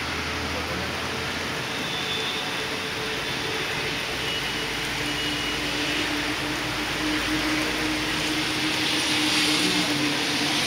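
Heavy wind-driven rain pouring steadily, growing a little louder near the end, with a faint steady hum joining about halfway in.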